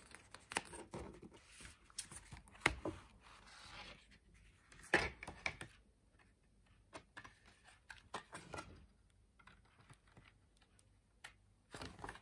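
Hands handling a cardboard collector's booklet, its paper inserts and a clear plastic slipcase: intermittent rustling, scraping and small ticks as the inserts are pushed back and the book is slid into the sleeve, the loudest scrape about five seconds in.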